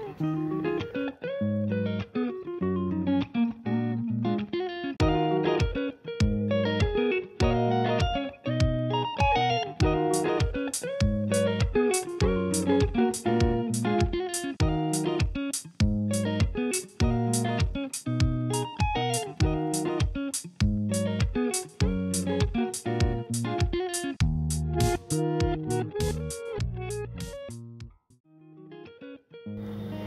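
Background music: a plucked-guitar track with a steady beat of about two strokes a second, which drops out about two seconds before the end.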